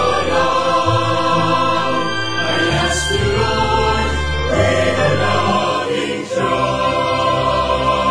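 Devotional hymn sung by a choir in long, held notes over a low, sustained accompaniment, the chords changing about every three seconds.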